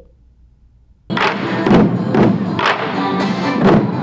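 Large ensemble of taiko drums beaten in unison by about a hundred drummers, with heavy strokes about twice a second, starting about a second in after a brief hush.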